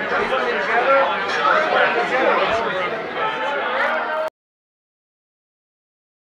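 A crowd of people talking over one another, which cuts off abruptly about four seconds in.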